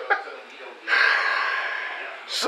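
Men's laughter trailing off, then a man's long breathy exhale, like a gasp or sigh after laughing, starting about a second in and slowly fading.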